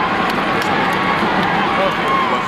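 A large group of American football players shouting and whooping together as their huddle breaks up, many voices overlapping, with a few sharp smacks among them.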